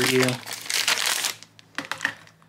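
Clear plastic bag crinkling as it is pulled open to take out a clear phone case, fading out about a second and a half in, followed by a few faint clicks.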